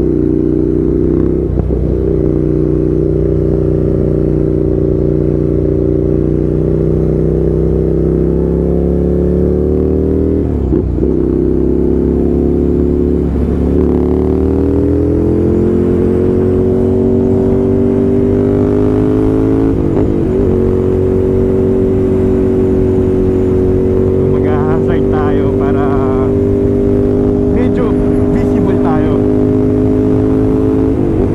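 Ducati Scrambler's L-twin engine running at cruising speed from the rider's seat. Its note climbs slowly in pitch with three brief dips, then holds steady for the last third, over a low wind rumble.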